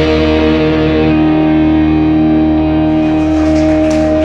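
Rock band music: a distorted electric guitar chord held and left ringing, its treble slowly fading.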